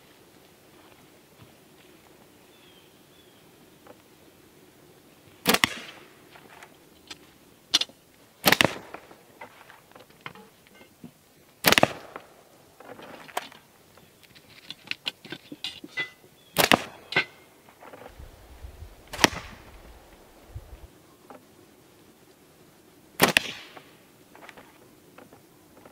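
Axiom slingshot with TheraBand flat bands being shot at a box target: six sharp cracks of release and impact, a few seconds apart, with fainter clicks between them.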